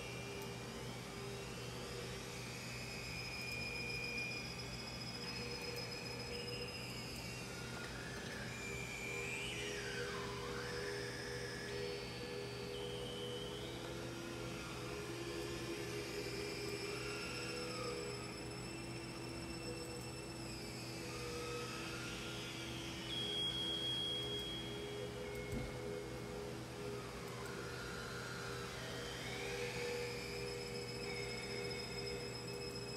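Experimental synthesizer drone: low tones held steadily under higher electronic tones that step between pitches and sweep up and down in slow glides, one dipping and rising again about ten seconds in.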